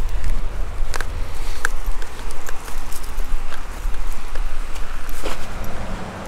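Footsteps on a gravel and grass verge under a steady low rumble of wind on the microphone, with a few sharp clicks.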